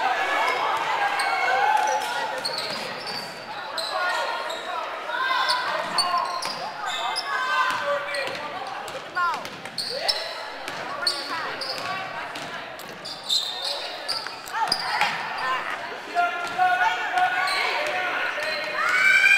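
Basketball game in a gymnasium: a ball being dribbled on a hardwood court, with short sharp bounces, over a constant mix of spectators' and players' voices echoing in the large hall.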